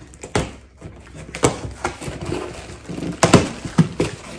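Cardboard shipping box being pulled open by hand, its flaps scraping and cracking in irregular sharp snaps, loudest about three seconds in, with plastic air-pillow packing rustling inside.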